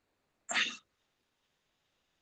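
A person's single short, breathy noise about half a second in, with silence around it.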